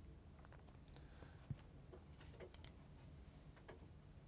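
Near silence: room tone with a few faint computer-mouse clicks, the sharpest about a second and a half in.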